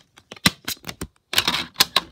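Handling noise: a scattered series of sharp clicks and knocks that thickens into a quick clatter about halfway through.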